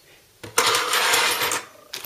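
Plastic packaging rustling and crinkling as a hand rummages among the bagged parts in the cooler's box, starting about half a second in and lasting just over a second.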